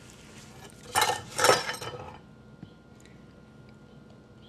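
Kitchen handling noises: two short rustling scrapes about a second in, from a gloved hand working dough in a stainless steel mixing bowl, then a couple of faint clinks.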